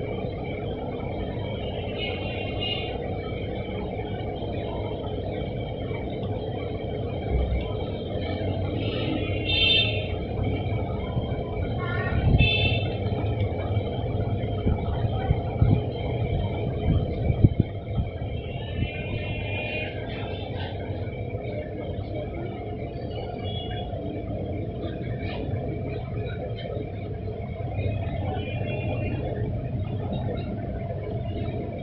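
Steady low rumble and hum with constant tones, with scattered knocks and clatter between about 12 and 18 seconds in.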